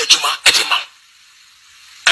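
Short vocal bursts from a person's voice in the first second, then about a second of faint hiss.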